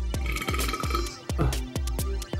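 Background music with a steady electronic beat, and a man's burp in the first second.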